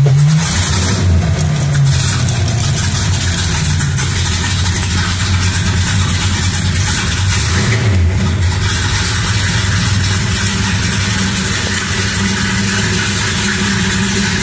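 Dodge Super Bee's 440 Six Pack V8 running at a high fast idle just after starting, its pitch rising and dipping a couple of times. The engine has been sitting a long time and has not yet settled down to idle.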